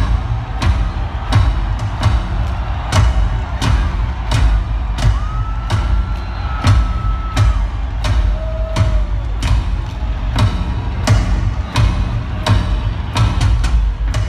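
Several large taiko-style drums played live together in a pounding rhythm, each strike a deep hit with a sharp stick crack on top. A shrill whistle is held for about two seconds near the middle.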